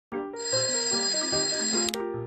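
Background music with a stepping melody, under a bright, high bell-like ringing that holds steady and stops just before the end, followed by a sharp click.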